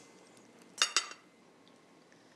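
Knife and fork clinking against a plate while cutting chicken: two short, ringing clinks about a quarter second apart, a little under a second in.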